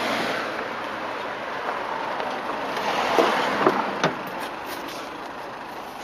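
Passing road traffic noise swells and fades. About three to four seconds in come a few sharp clicks and knocks as the Mazda MX-5's door is unlatched and opened.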